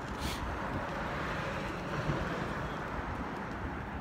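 City street background: a steady rumble of traffic with wind buffeting the phone microphone, and a brief high hiss about a quarter second in.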